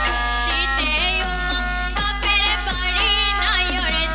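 Women singing a Sylheti dhamail folk song through microphones and a PA, the voice wavering with vibrato over steady instrumental accompaniment.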